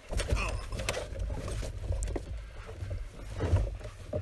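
Canoe being boarded and pushed off from a riverbank: a low rumble with a few knocks as the hull shifts and the paddler settles in.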